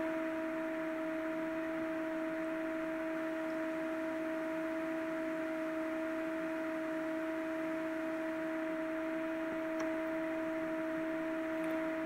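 A steady hum of two low, unchanging tones, one above the other, over a soft hiss, with no break or change.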